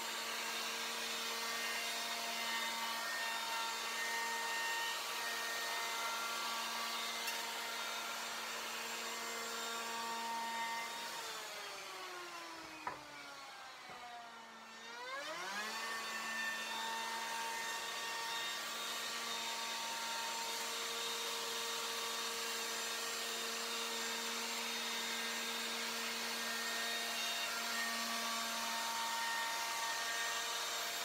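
Handheld electric router with a radius (round-over) bit running at steady speed, rounding the edge of wooden stair treads. About eleven seconds in it is switched off and its pitch falls as it winds down. After a click it is switched back on, spins up to speed and keeps running.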